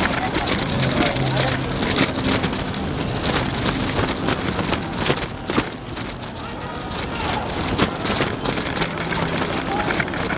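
Rattling and rushing noise of a bicycle being ridden, picked up by a camera on the moving bike, with wind on the microphone and many small knocks and clicks. Voices of people nearby run under it, and a steady low hum returns near the end.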